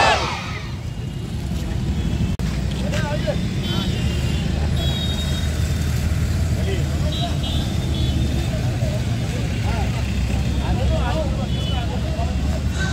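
Steady low rumble of road traffic, growing louder a few seconds in, with scattered voices of people close by.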